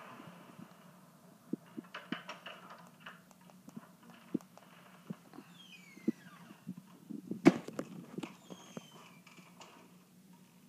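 Scattered short clicks and knocks, the loudest about seven and a half seconds in, over a low steady hum, with a few faint falling squeaks in the middle.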